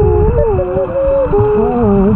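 Several people humming and squealing into their snorkels underwater, heard through the water as overlapping wavering tones that slide up and down in pitch. Dolphin-swim guides have swimmers make such sounds to draw the dolphins in.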